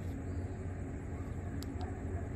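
Steady low background hum with a few faint clicks: one at the start and two close together near the end.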